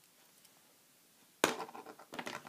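Near silence, then about one and a half seconds in a sharp knock followed by a quick clatter: a metal eyelash curler being put down on a hard surface and handled.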